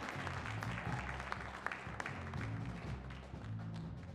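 Jazz rhythm section playing with the horns silent: an upright bass plays a line of low notes that change about every half second, under drum-kit and cymbal strokes.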